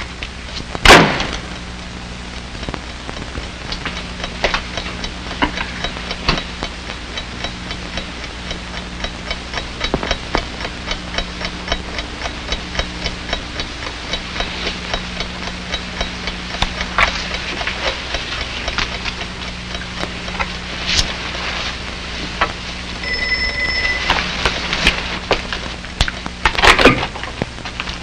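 Old film soundtrack hiss and mains hum with frequent crackles; a door shuts with a loud knock about a second in. A telephone rings briefly about two-thirds of the way through, followed by a louder burst near the end.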